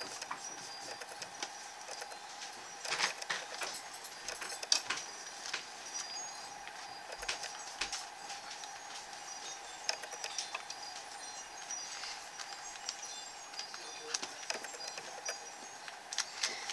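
A paintbrush dabbing and stroking over a thin paper napkin laid on a journal page, with hand-smoothing and scattered light taps and clicks, a few sharper ones standing out. A steady faint hum runs underneath.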